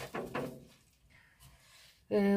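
A voice trailing off at the end of a sentence, then near silence.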